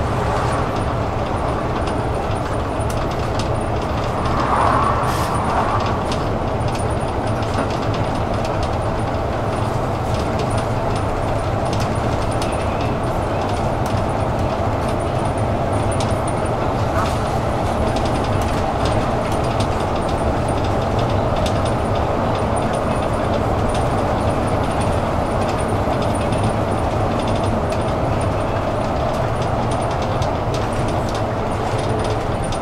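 Steady engine and tyre noise heard from inside a moving city bus, with scattered light clicks and rattles. There is a brief louder swell about five seconds in.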